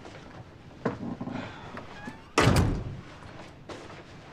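Front door of a flat shutting with one heavy thud a little past halfway, after a lighter click and some rustling of people coming in.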